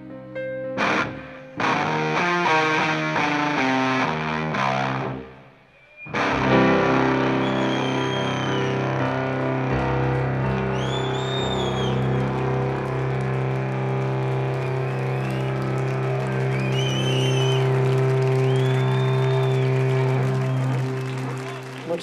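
Live rock band music: electric guitar and keyboard play a rhythmic chord passage, break off briefly, then about six seconds in settle into one long held chord with distorted guitar through effects, short warbling tones rising and falling above it, as the song ends.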